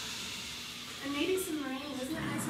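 Human voices imitating wind: a breathy whooshing hiss, then a wavering, gliding voiced 'oooh' about a second in.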